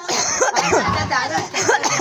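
Several people's voices at once, loud and overlapping, with pitch rising and falling quickly and no single speaker standing out.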